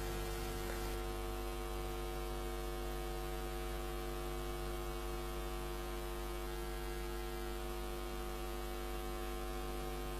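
Steady electrical mains hum with a stack of overtones, an unchanging buzz that holds at a low level throughout.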